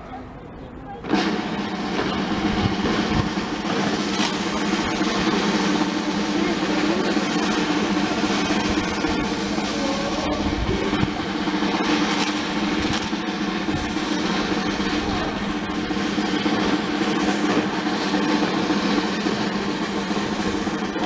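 Military band music with sustained tones and drum strokes, starting suddenly about a second in.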